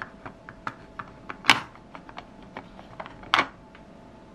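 Fingers handling a small hard-plastic toy sofa and pressing stickers onto it: a string of light clicks and taps, with two louder, slightly longer scrapes, about a second and a half in and again late on.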